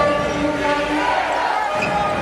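A handball bouncing on a wooden sports-hall court, with players' and spectators' voices going on throughout.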